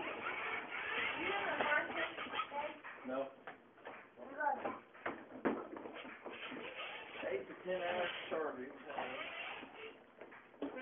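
Indistinct voices of people talking in a room, with a few scattered clicks and knocks.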